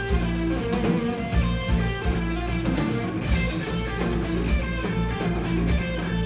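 Live instrumental hard rock: electric guitar played over bass guitar and a drum kit, with steady drum hits running under held guitar notes.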